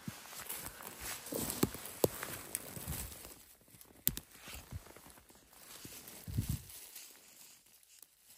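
Footsteps and rustling in forest-floor undergrowth as mushrooms are picked by hand. Scattered light crackles run through it, with a sharp click about four seconds in and a couple of dull low thumps.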